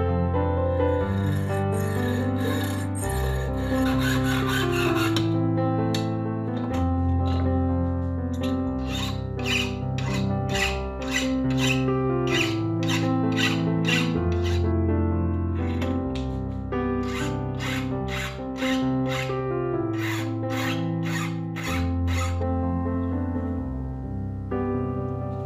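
Piano background music over hand-tool strokes on a stainless steel rod clamped in a vise: quick hacksaw strokes in the first few seconds, then a file rasping back and forth at about two strokes a second in two long runs.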